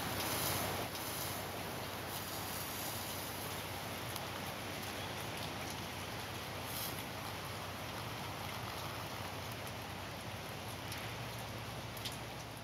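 Steady outdoor background noise, a smooth hiss with no distinct events, a little louder in the first second.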